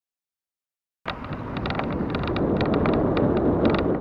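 Wind buffeting the microphone outdoors, a dense low rumble with scattered sharp clicks and rattles. It starts abruptly about a second in and cuts off suddenly.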